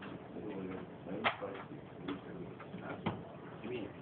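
Indistinct murmur of several men's voices in a room, with two sharp clicks, one about a second in and one near three seconds.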